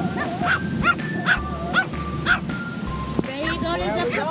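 Pomeranian yipping and barking in a quick string of short, high calls, about two a second, over background music.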